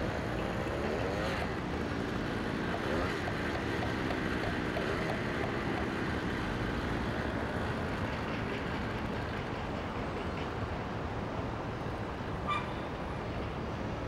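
Steady outdoor background noise on a building site, like distant road traffic, with one short sharp knock near the end.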